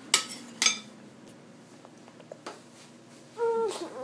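A metal spoon clinks twice against the ceramic slow-cooker crock, sharp ringing strikes about half a second apart, followed by a few faint scrapes and ticks as stock is spooned onto the pork. A brief pitched tone sounds near the end.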